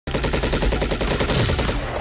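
Rapid automatic gunfire in a film soundtrack, about a dozen shots a second, starting abruptly and blurring into a continuous clatter after about a second.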